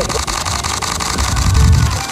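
Canon R3 shutter firing in a rapid continuous burst, an even run of about ten clicks a second. A low rumble swells near the end.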